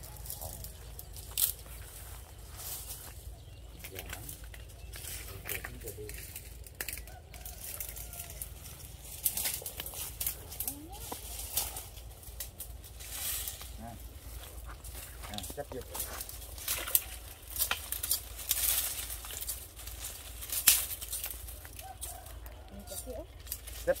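Outdoor rural ambience: a steady low rumble under scattered rustling and crackling, with faint voices.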